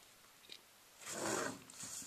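A pencil scratching across paper in one brief stroke about a second in, after a quiet start: the sound of a line being drawn on a graph.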